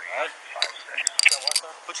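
Steel handcuffs and a handcuff key clinking as the cuffs are handled to be unlocked from a person's wrists, with a quick run of sharp metallic clicks about a second in.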